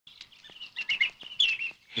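Birds chirping: a quick, busy run of short high notes and little pitch glides, with a man's voice starting right at the end.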